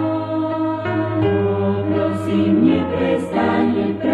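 Mixed church choir singing held chords of a slow sacred song in Slovak, the harmony moving a few times, with brief sung sibilants.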